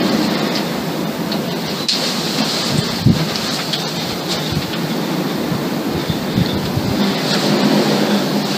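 Steady rushing wind noise on the microphone, with uneven low rumbling and one short thump about three seconds in.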